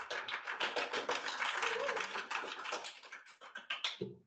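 A small audience applauding: many overlapping hand claps that swell quickly and thin out toward the end.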